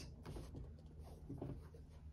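Faint soft rustling and light scraping as a soccer cleat is handled and lifted off a small digital scale.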